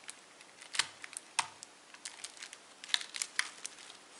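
Irregular small clicks and taps of handling a polyester film capacitor: its wire leads being bent and pushed into the test socket of a handheld component tester. The clicks are scattered, with the sharpest ones about a second and a half in and around three seconds in.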